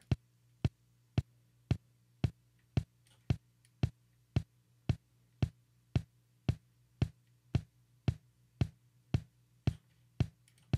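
A single drum track soloed in a multitrack mix: one drum hit repeating at a perfectly even pace, a little under two a second, each hit short and dying away quickly. Each hit carries a boxy room tail that is being reduced with a channel strip. A faint steady low hum sits underneath.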